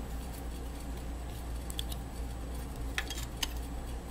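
A few faint clicks and light taps of a plastic lens being worked into a nylon safety-glasses frame by hand, over a steady low hum.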